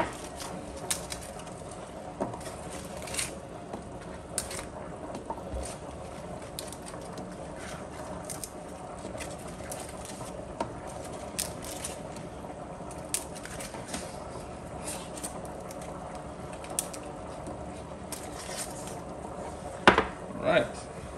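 Brussels sprouts being snapped off their stalk by hand: irregular crisp snaps and crackles, a few seconds apart, over a steady background hum.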